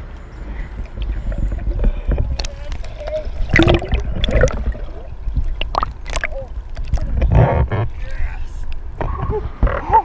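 A hooked largemouth bass splashing at the surface beside the boat as it is landed by hand, in a series of sharp splashes over a steady low rumble. A man's brief wordless vocal sounds come through a few times.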